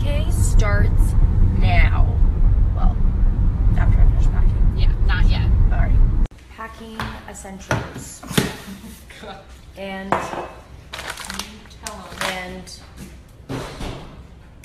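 Heavy low rumble of a car cabin on the move, with snatches of a woman's voice over it. About six seconds in it cuts off abruptly to a much quieter stretch of voices.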